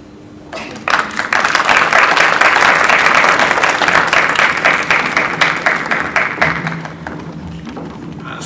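Audience applauding, starting about half a second in, building quickly and thinning out over the last couple of seconds.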